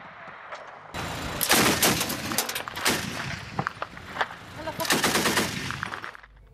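Truck-mounted heavy machine gun firing in repeated bursts of rapid shots, starting about a second in.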